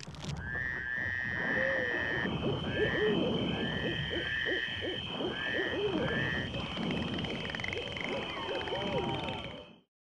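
A layered soundscape of animal calls: a steady high whine runs throughout, groups of short repeated rising calls come in the first two-thirds, and lower curving calls sit underneath. It starts and cuts off abruptly.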